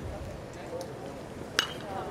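A baseball bat hitting a pitched ball: one sharp ping with a short ringing tone, about one and a half seconds in.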